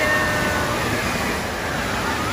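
Steady rush of water flowing through a shallow splash pool, with a few faint children's calls over it near the start.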